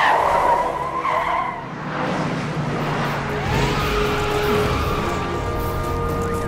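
Police car's tyres squealing as it peels away fast, loudest in the first second or two, then the car's sound carrying on more steadily.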